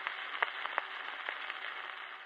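Surface noise of a 78 rpm shellac record with the needle still in the groove after the music has ended: a faint steady hiss with scattered clicks and crackles.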